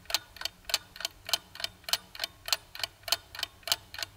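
Clock-ticking countdown sound effect: an even run of short, sharp ticks, about three a second.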